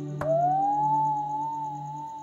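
Music: a single pure sustained note that slides up just after a click and then holds, over a steady low drone.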